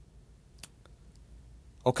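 Low, steady room hum with a sharp click about half a second in and a fainter click just after.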